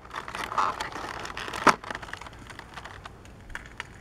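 Old, brittle plastic blister pack being peeled and handled: light clicks and crackles, with one sharp snap about one and a half seconds in. The 21-year-old plastic has yellowed and is cracking as it is worked.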